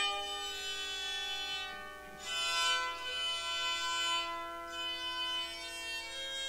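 Hammered dulcimer playing a slow melody: struck notes ring on and overlap, with fresh clusters of strikes about two seconds in and again near five seconds.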